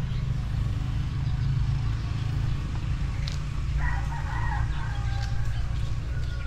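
A rooster crowing once, about four seconds in, over a steady low rumble.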